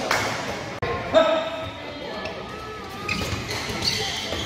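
Badminton play in a large indoor hall: a sharp hit about a second in, typical of a racket striking a shuttlecock, with voices and hall echo around it.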